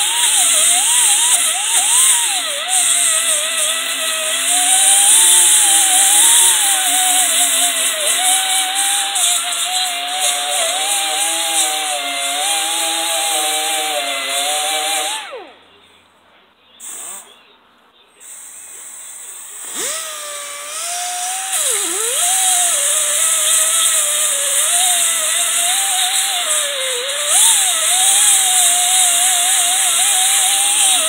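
Die grinder grinding rust off the steel deck of a brush-hog mower, its whine wavering in pitch as it bites into the metal. About halfway through it stops for a few seconds, then starts up again with a short dip and rise in pitch and goes on grinding.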